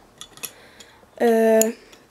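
A few light clicks of plastic toy show-jumping obstacle pieces being handled, then a girl's drawn-out hesitation sound, a held 'eee', lasting about half a second.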